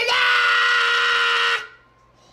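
A person's long, loud, high-pitched scream held at one pitch, cutting off suddenly about a second and a half in.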